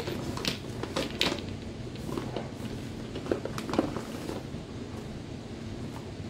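Scattered light clicks, knocks and rustles as small plastic Wallflower refills and a bag are handled and searched through, thinning out after about four seconds. Under them is a steady low hum from a running air conditioner.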